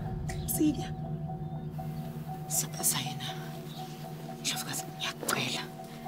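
Soft, hushed dialogue between two women over a low, sustained music score that holds steady tones throughout.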